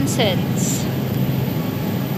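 Steady supermarket background noise, the even hum and rush of refrigerated display cases and store air handling, with a brief falling voice fragment at the very start.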